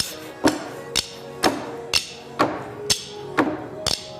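Drumsticks striking the padded tops of plastic milk crates in unison, single strokes about twice a second on the beat, over background music with a steady beat.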